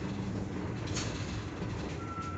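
Inside a moving bus: steady low engine and road rumble, with a brief click or rattle from the cabin about halfway through.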